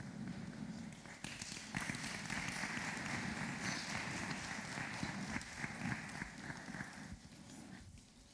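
Audience applauding: a steady patter of many hands that starts about a second in and dies away near the end.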